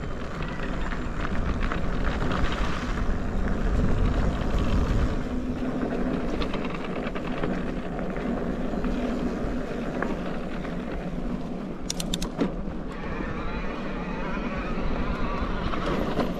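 Riding noise from an e-bike on a dirt singletrack: wind buffeting the microphone and knobby tyres rolling over dirt, heaviest in the first few seconds. A faint steady hum runs through the first half, and a few sharp clicks come about twelve seconds in.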